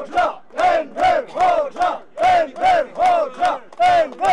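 A crowd of people chanting a slogan in unison, clapping in time, with about three loud shouted syllables a second in a steady repeating rhythm.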